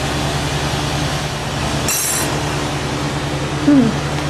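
Steady rushing roar of a lampworking bench torch flame, with a low hum of ventilation under it. About halfway through comes one short, high-pitched glassy clink.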